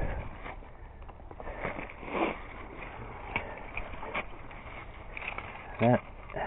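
Dry leaves and bare brush rustling, with scattered small twig snaps and crackles at irregular moments.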